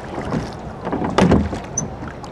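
Rowing boat under oars: a stroke about a second in, with the oars knocking in the rowlocks and the blades splashing in the water.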